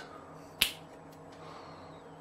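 A single sharp click about half a second in, over a faint steady hum of room tone.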